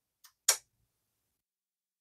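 Two brief clicks, a faint one and then a sharper one a quarter second later; otherwise silence.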